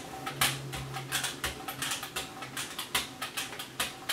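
A rubber brayer rolling tacky acrylic paint back and forth across a gel press plate, making a fast, irregular crackle of small clicks as the roller lifts from the paint. A low hum runs under the first half.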